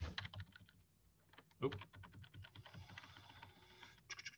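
Faint rapid clicking from a computer keyboard and mouse. There is a quick run of clicks at the start, then denser, steady clicking through the second half.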